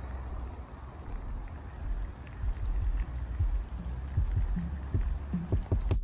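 Outdoor ambience from a camera carried along a paved path: a steady hiss over a low rumble, with scattered soft low thumps.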